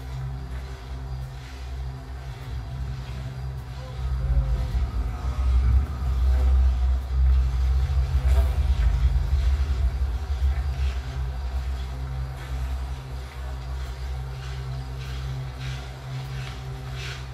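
Low droning rumble from a band's amplified instruments with a steady amp hum underneath, swelling louder about four seconds in and easing back after about ten seconds.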